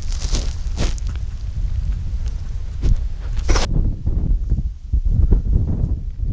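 Wind buffeting an action camera's microphone, heard as a steady low rumble. A few brief scrapes and rustles come in the first half, and the higher hiss falls away a little after halfway.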